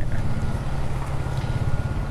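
A vehicle engine idling: a steady low rumble with fast, even pulses.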